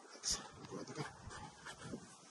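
A Damascus-steel knife blade piercing and cutting the tin lid of a can: a series of short metal scrapes and clicks, the loudest about a third of a second in.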